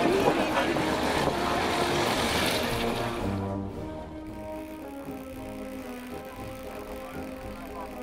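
Pratt & Whitney R-1340 radial engine of a North American T-6 in aerobatic flight, a loud steady engine noise that fades away about three seconds in. Music with held notes carries on after it.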